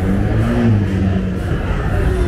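Taxi van driving past at close range, its engine running steadily.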